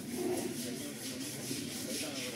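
A wet elephant's hide being scrubbed by hand with a scrubbing block, in quick, regular rubbing strokes, over the hiss of water running from a hose.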